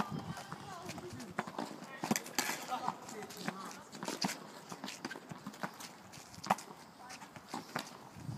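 Low-compression red tennis ball being struck by junior rackets and bouncing on a hard court: a string of irregular sharp knocks, the loudest one a racket hit at the very start, mixed with shoe steps on the court.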